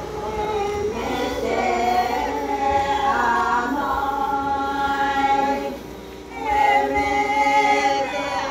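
A group of Naga women singing a traditional song together, unaccompanied, in long held notes. The voices break off briefly about six seconds in, then come back in on the next phrase.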